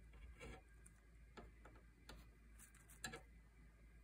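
Near silence, with a handful of faint, irregular clicks.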